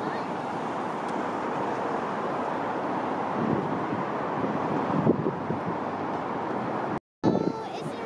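Steady wind noise on the microphone over distant traffic. It cuts out briefly near the end.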